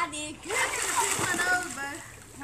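Swimming-pool water splashing for about a second and a half as swimmers move through it, after a short vocal sound at the start.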